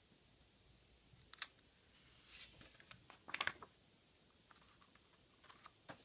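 Small scissors trimming the excess tape off the edge of a paper planner page: a few faint snips and paper rustles, with a short cluster of snips a little past the middle.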